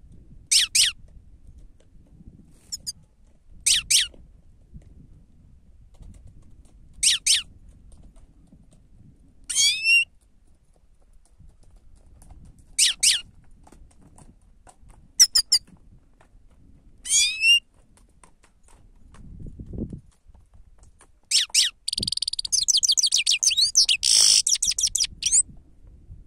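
Grey-headed goldfinch calling: single sharp, high calls about every three seconds, then a rapid twittering burst of song lasting about three seconds near the end.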